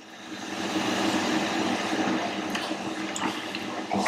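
Steady rushing noise that swells in over the first second and then holds.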